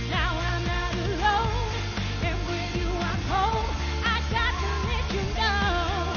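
Live pop band performance: a woman singing held notes and runs that slide and waver in pitch, over bass guitar, drums and guitar.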